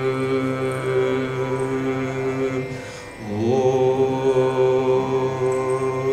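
Male Carnatic vocalist holding a long sustained note over a steady drone. About three seconds in the note breaks off, then slides up into another long held note.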